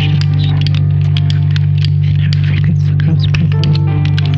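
Ambient electronic music: a loud, steady low hum under scattered crackling clicks, with a few faint held tones.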